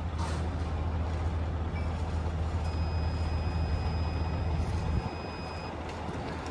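Centaur wireless phosphine sensor beeping as it is switched on: one steady high-pitched beep about three seconds long, starting a little before the middle. Under it, the low hum of a vehicle engine idling, which drops away near the end.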